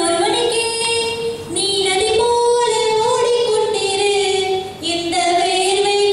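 A woman singing solo into a microphone, unaccompanied, in long held, gently sliding notes. Her phrases break briefly about one and a half seconds in and again near five seconds.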